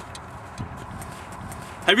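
Footsteps on snow over a steady background hiss, with a few soft low thumps, then a man's voice right at the end.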